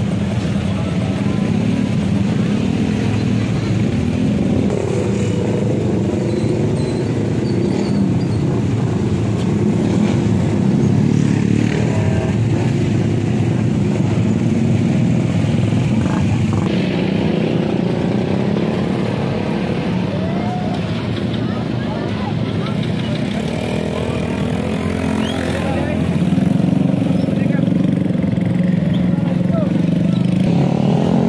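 Motorcycle and scooter engines running steadily, with a crowd of people talking over them; the engine sound grows a little louder over the last few seconds.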